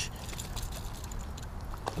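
Faint splashing of a hooked bowfin flopping at the pond's edge, over a low steady background hiss, with one brief click near the end.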